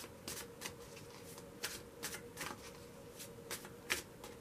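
A deck of tarot cards being shuffled in the hands: irregular soft clicks and flicks of cards sliding against one another, a dozen or so, with the sharpest just before the end.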